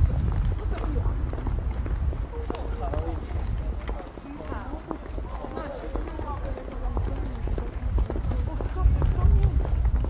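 Outdoor street sound: indistinct talk of passers-by throughout, over a heavy low rumble of wind buffeting the microphone, with footsteps on the pavement as the camera walks.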